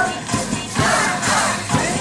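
A group of hand-percussion players (shakers, wooden clappers, wooden fish) beating a steady rhythm, about two to three strokes a second, along with music, with many voices raised together over it.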